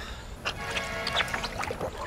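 Pool water sloshing and splashing as a man lowers himself down into a backyard above-ground pool. From about half a second in, a steady held sound with several pitches sits over it.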